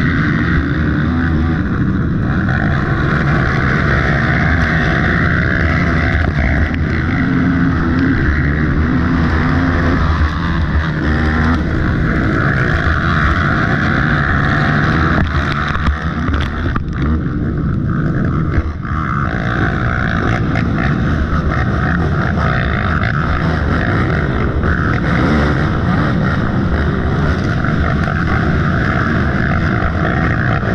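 Dirt bike engine running loudly and steadily at high revs under racing load, heard from a camera mounted on the bike.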